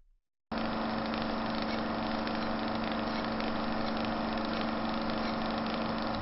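A steady machine-like hum that starts abruptly about half a second in and holds at an even level.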